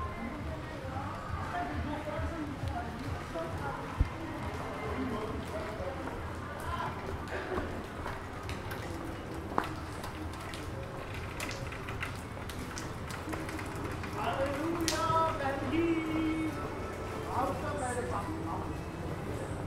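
City street ambience on a cobbled pedestrian lane: indistinct voices of passers-by with snatches of music, stronger for a few seconds near the end. Two sharp knocks, about four seconds in and near the middle.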